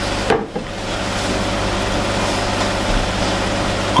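Steady hiss with a low hum underneath, and one light knock about a third of a second in.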